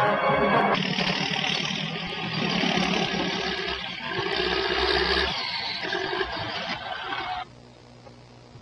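Brass orchestral music ends about a second in and gives way to the steady, noisy running of heavy earthmoving machinery, a motor scraper at work. The machine noise cuts off suddenly about seven and a half seconds in, leaving only a faint hum.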